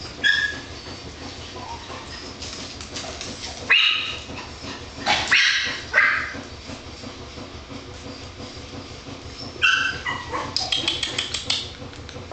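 Small dogs yipping and barking in short high-pitched bursts, about five times, with a quick rapid run of sharp clicks near the end.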